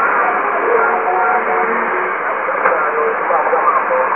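Weak shortwave AM broadcast of ZNBC Zambia on 5915 kHz over a radio receiver's speaker: faint, indistinct speech buried in loud, steady static hiss, with muffled, narrow-band audio typical of long-distance reception.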